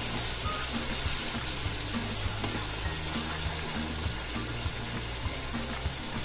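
Tomato-puree and onion masala sizzling steadily in oil in a frying pan as it cooks down until the oil separates, with background music underneath.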